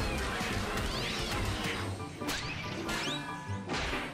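Cartoon soundtrack: orchestral music under a cartoon cat's gliding yowls and slapstick crash effects, with sharp hits a little after two seconds and again near the end.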